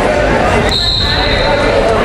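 Spectators yelling and cheering in an echoing gym during a wrestling bout, with a brief high, steady tone lasting under a second, starting about two-thirds of a second in.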